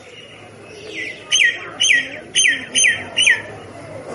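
A myna calling: a quick series of about five loud, short whistled notes, each sliding downward in pitch, about two a second, beginning just over a second in.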